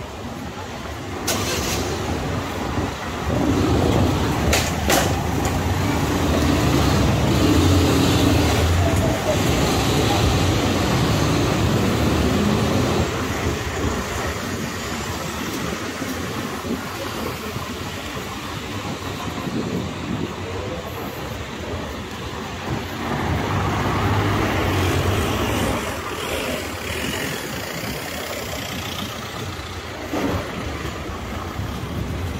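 Street traffic: cars driving along a narrow city street, their engines and tyres rumbling louder a few seconds in and again near the end, with a couple of brief clicks early on.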